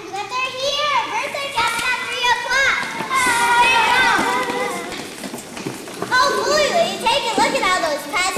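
A group of young children talking and calling out at once, many high voices overlapping so that no words stand out; it swells loudest about halfway through and again near the end.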